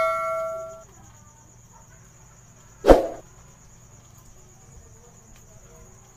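End-screen sound effects: a bright chime that rings out and dies away within the first second. About three seconds in comes a single sharp hit, the loudest sound, over a faint steady high whine.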